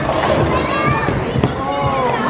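Busy bowling-alley din: several voices talking and calling out over low thumps and background noise, with one longer call near the end.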